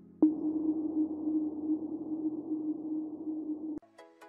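Intro logo sound effect: a sharp hit about a quarter second in, then a steady low humming tone that slowly fades and cuts off suddenly just before the end.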